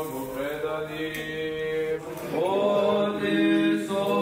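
Orthodox liturgical chant sung by several voices in long held notes over a steady low drone. About halfway through one phrase ends and a new, louder one begins with a rising entry.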